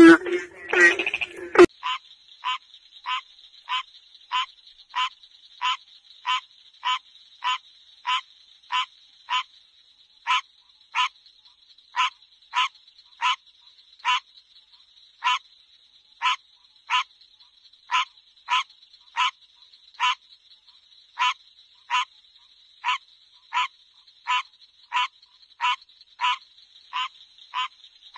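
American green tree frog calling: short, evenly spaced calls about one and a half a second, over a steady high-pitched hum. For the first two seconds a different, lower-voiced frog calls loudly before a cut.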